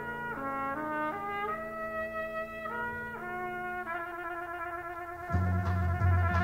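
Solo trumpet playing a moving melodic line over held chords from a concert band. About five seconds in, the full band comes in loudly, strong in the low range.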